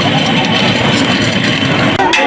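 An engine running steadily: a dense, even rumble with no speech over it.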